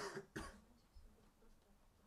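A man gives two short coughs close to the microphone, the second about half a second after the first.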